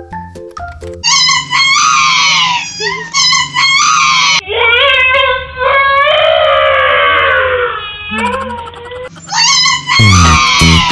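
A few short electronic keyboard notes, then about a second in a woman's extremely loud, very high-pitched shrieking laugh of surprise, in repeated squeals. From about halfway the squeals turn longer and lower, each sliding down in pitch.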